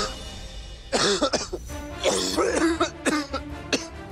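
A man coughing in fits over background music: a burst about a second in, a longer rasping fit about two seconds in, then short sharp coughs near the three-second mark.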